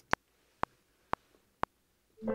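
Logic Pro X metronome counting in before recording: four short clicks half a second apart at 120 bpm, the first accented.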